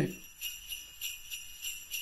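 Jingle bells ringing faintly and steadily, a soft high shimmer with a few light ticks.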